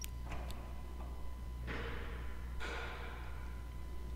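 2009 Honda Accord's trunk release answering the remote's trunk command: a sharp click at the start, then two short noisy bursts about a second apart, each fading away quickly.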